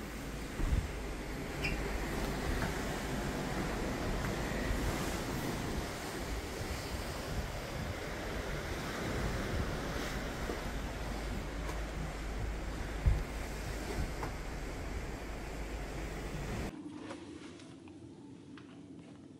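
Wind blowing across the microphone over the rush of sea water streaming past a moving cruise ship's hull, with two sharp wind buffets, one about a second in and another later on. Near the end it cuts off suddenly to the quiet of a cabin interior.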